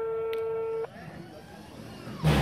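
A single steady horn-like tone, one flat pitch held for about a second, that cuts off sharply, followed by a faint murmur of voices.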